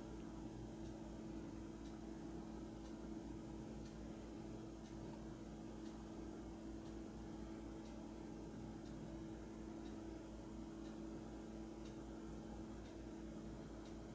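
Steady low electrical hum of room equipment, with faint ticks about once a second.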